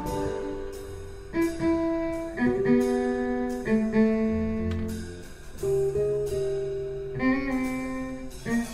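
Live jazz quintet playing. The violin starts its solo with a slow line of long held notes, each about a second, over the band's quieter accompaniment.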